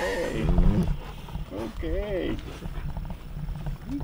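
Dogs whining: a few short calls that rise and fall in pitch, over a steady low rumble.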